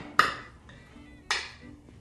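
Metal palette knife clinking twice against a glass palette while mixing paint, the strikes about a second apart, each with a short ring.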